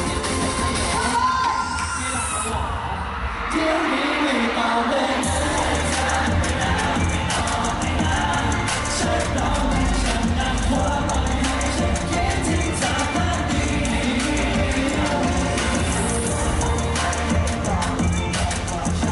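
Live pop song with singing, played loudly over a concert hall sound system with a steady beat and heavy bass. Near the start the beat drops out for a couple of seconds, then the full beat and bass come back in.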